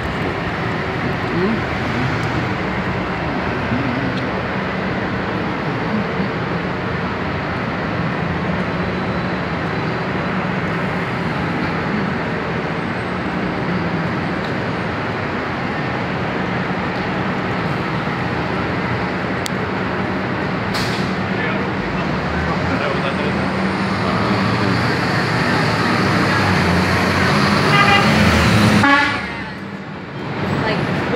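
City street traffic: a steady, dense wash of vehicle engines and road noise, with horn toots among it. It swells a little louder near the end, then drops off sharply.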